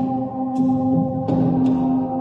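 Frosted quartz crystal singing bowls struck with mallets: three strikes in quick succession over several ringing tones that hold and blend into one another.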